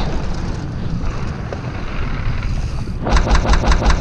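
Mountain bike rolling fast down a dirt trail: a steady rumble of tyres and rushing wind on the camera microphone, then near the end about a second of rapid clattering knocks as the bike slams through rough ground and the RockShox Pike fork bottoms out hard.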